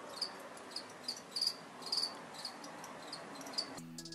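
Crickets chirping: short, high chirps about two or three a second, unevenly spaced, over a faint hiss.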